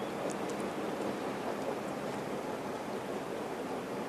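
Steady, even hiss of room noise and recording background, with no distinct sound event.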